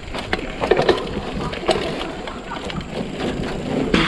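Mountain bike rolling down a rough dirt trail: tyre noise on dirt and the bike rattling over bumps, with a few sharp clicks and knocks.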